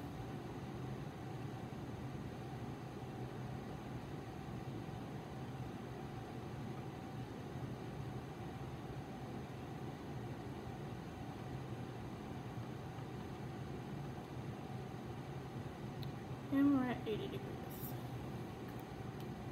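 Steady room hum with a faint even hiss. Near the end comes a short vocal sound that bends in pitch.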